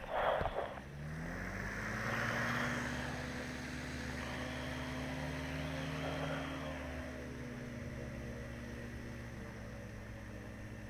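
Ultralight trike's engine and pusher propeller running as the trike taxis on grass: the engine note rises about a second in, then holds steady and eases off slightly later on, with propeller and wind hiss over it.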